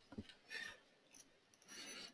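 Near silence: room tone with a few faint clicks and two soft, brief hissing rustles, the second just before speech resumes, like an intake of breath.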